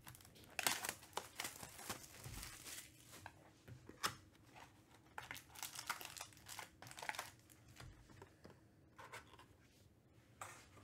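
A cardboard trading-card hobby box being opened by hand and its foil card packs pulled out: a quiet run of tearing, crinkling and scraping handling noises, loudest about a second in and again at about four seconds.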